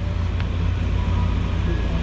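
Steady low rumble of street traffic and vehicles, with a faint click about half a second in.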